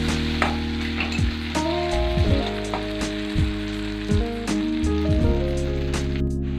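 Chopped onion, tomato and green chilli sizzling in oil in a kadai, stirred with a steel spatula that scrapes and clicks against the pan every second or so. Background music with steady held notes plays over it.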